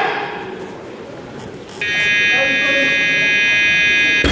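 Competition electronic buzzer sounding one steady, high-pitched tone of about two seconds, starting about two seconds in: the referees' down signal telling a weightlifter holding the bar overhead to lower it.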